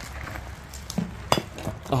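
A glass bottle being picked up and handled, giving a few light clinks in the second half, one sharper than the rest with a short ring.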